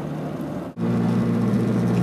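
Steady low road and engine drone heard from inside a car moving at highway speed. It cuts out abruptly for an instant under a second in and comes back a little louder.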